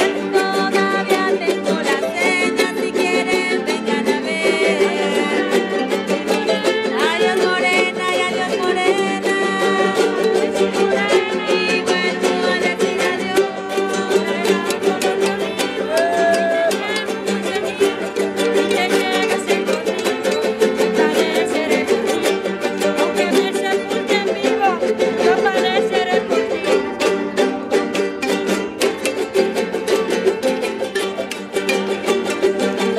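Live traditional Mexican folk music: three small guitars strummed in a quick, steady rhythm while a woman and a man sing.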